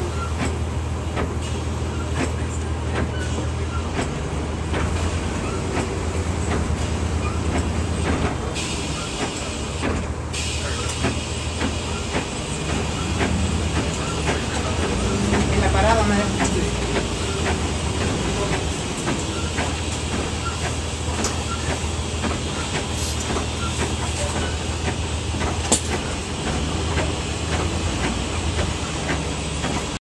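Inside a 1999 NovaBus RTS transit bus under way: a steady low engine drone, with constant rattles and clicks from the body and fittings. A sharp knock comes near the end.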